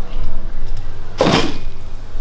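A pair of denim jeans thrown onto a pile of plastic garbage bags: one rustling swish a little past the middle, over a steady low rumble on the microphone.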